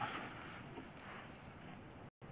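Faint steady background noise with no distinct sound in it.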